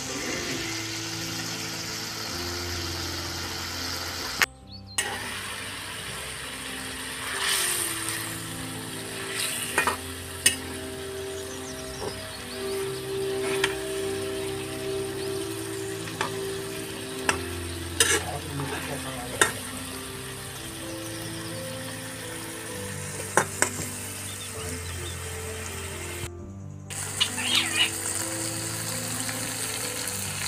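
Masala gravy sizzling in an aluminium kadai while a metal spatula scrapes and knocks against the pan now and then, over background music.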